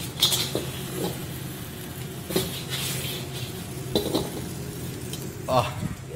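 Steamed crab pieces tossed and stirred in a wok over a gas wok burner, dry-roasting: several sharp metal clanks and scrapes from the wok and utensil, over a steady low hum.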